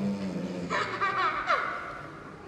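A small child's high voice squealing and laughing, wavering, with one quick falling squeal about a second and a half in.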